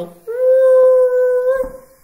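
A single long, steady, high-pitched howl held for about a second and a half, louder than the talk around it, rising slightly just before it stops.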